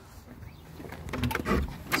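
A few short clicks and knocks of a motel room door being unlocked and opened, starting about a second in, with the sharpest knock near the end.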